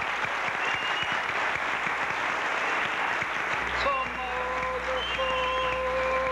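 Audience applause, cut off abruptly about four seconds in, where music with long held notes begins.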